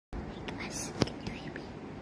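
A girl whispering close to the microphone, with one sharp click about a second in.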